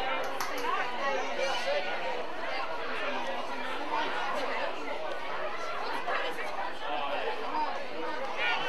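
Many overlapping voices calling out and chattering at a local Australian rules football game, with no single clear speaker.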